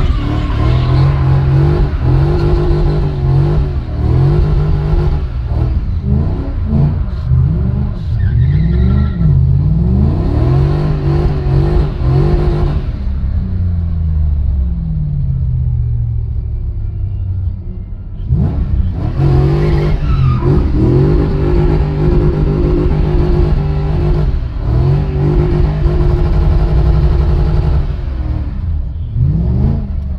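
BMW drift car's engine heard from inside the cabin, revving hard as it is drifted, its pitch rising and falling quickly with the throttle. It eases off for a few seconds around the middle, then revs hard again.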